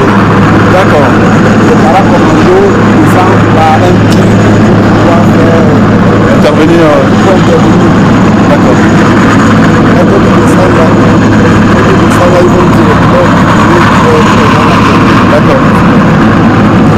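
Military helicopter hovering close overhead, its rotors and turbine engines making a loud, steady drone.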